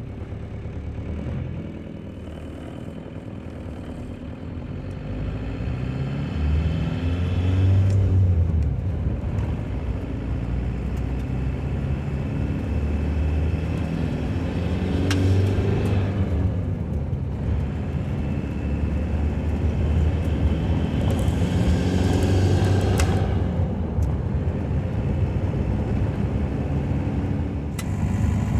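Turbocharged VW 1.9 TDI four-cylinder diesel (ALH) heard from inside the truck's cab under hard acceleration. The engine note swells and climbs in pitch three times, dropping back in between, with a higher whine riding on each pull.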